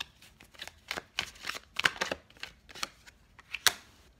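Tarot cards being handled and shuffled by hand: a string of irregular, sharp card snaps and flicks, with two louder ones about two seconds and three and a half seconds in.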